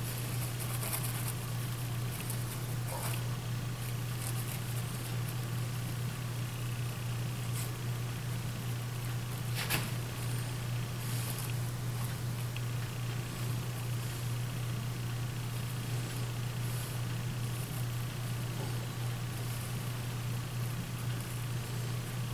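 Steady low hum throughout, with a few faint light taps, one a little clearer about ten seconds in, as a small brush works glue into the dovetail key slots of a wooden box.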